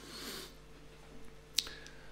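A pause in a man's speech: a soft breath at the start, then a single sharp click about one and a half seconds in, over a faint steady hum.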